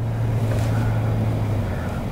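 Inside a moving car's cabin: a steady low engine hum over road and air noise, the hum easing near the end.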